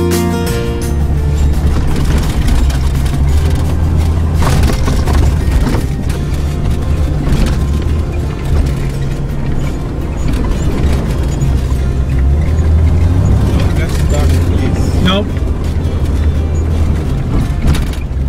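A jeep driving over a rough dirt track: a steady low engine and road rumble, with scattered knocks and jolts from the bumps.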